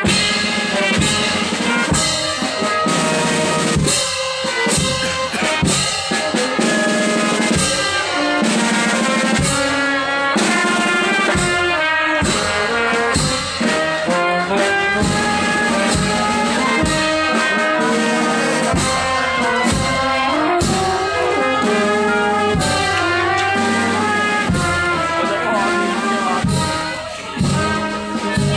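Brass band music with drums, pitched horn notes over a steady drumbeat.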